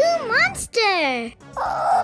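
Wordless cartoon vocal sounds, in the style of a small creature whining or whimpering: a quick rising-and-falling squeal twice, then one long falling whine, followed near the end by a short hissy burst.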